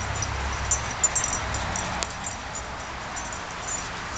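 Dogs at play on a lawn: brief dog sounds and a sharp knock about a second in, over a steady outdoor hiss.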